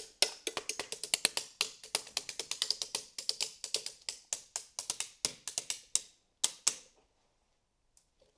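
Two mallets tapping quickly down the vertebrae of a hanging model skeleton, played like a percussion instrument: a fast run of clicky taps, then after a short pause two last strikes.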